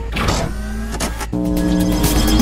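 Whooshing, motor-like sound effects over electronic background music. A sustained synth chord comes in near the end.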